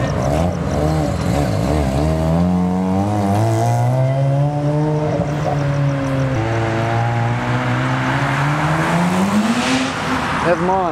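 A car engine revving and accelerating along the street. Its pitch wavers, climbs and holds, drops suddenly about six seconds in, then climbs again near the end.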